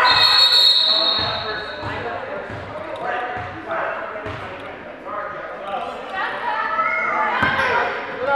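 Referee's whistle blown in one blast of about two seconds at the start, stopping play over a tied-up loose ball. Voices of players and spectators call out in a large gym throughout, with a basketball bouncing.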